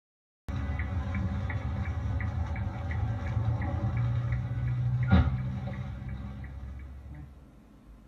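Dashcam recording from inside a car: a steady low engine and road rumble with a light ticking about three times a second, cut by a single sharp knock about five seconds in, the loudest sound, typical of a collision nearby. The rumble then fades away.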